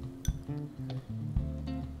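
Background music: a plucked acoustic guitar with a bass line.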